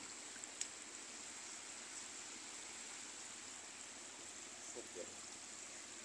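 Faint, steady outdoor background hiss with a thin high steady whine over it, and a single click about half a second in.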